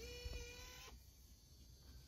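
Faint, brief whir from the JVC GR-DVL310U Mini-DV camcorder's tape mechanism as it is put into play mode, with a light click, lasting under a second.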